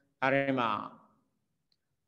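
A man's voice saying one short phrase with a falling pitch, fading out about a second in.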